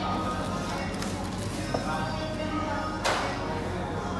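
Busy restaurant background of indistinct voices and background music, with a small click just before two seconds in and one sharp clack, like tableware, about three seconds in.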